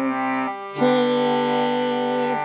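Harmonium playing held, reedy chords, changing to a new chord a little under a second in.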